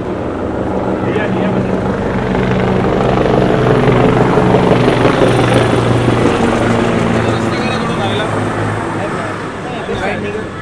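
A vehicle engine's steady low drone under a crowd of overlapping voices calling out, growing louder through the middle and easing off near the end.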